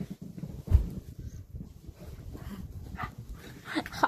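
A dog vocalizing during rough play with a person on a bed, with a low rumbling run of sounds and short whines, and one thump about a second in.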